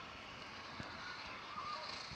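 Faint, steady mechanical running noise from a greyhound track's lure as it runs along the rail toward the starting boxes.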